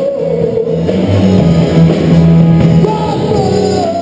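Live rock band playing: electric guitars, bass and drum kit, with a singer holding long notes over them.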